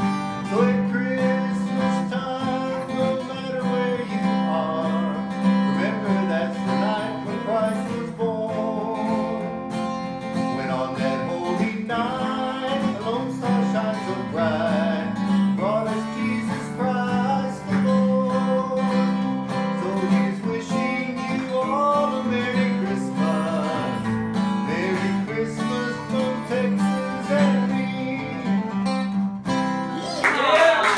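Acoustic guitar being played, strummed chords with runs of single notes over them.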